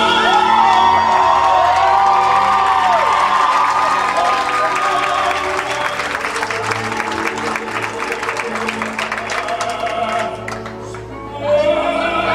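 Operatic singing by a high female voice with orchestral accompaniment, the voice wavering on long held notes. From about three seconds in, the audience claps and cheers over the music. The music dips near the end, then the singing comes back.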